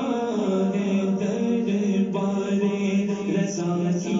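A male voice singing a slow Urdu devotional verse, drawing out long, wavering held notes.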